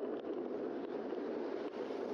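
Steady rush of wind on the microphone and tyre noise from a bicycle rolling along a paved street.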